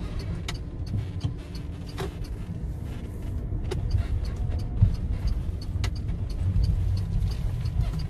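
Road and tyre rumble heard inside the cabin of an electric car driving slowly, with no engine note. A few light clicks and knocks sound over it, the sharpest just before five seconds in.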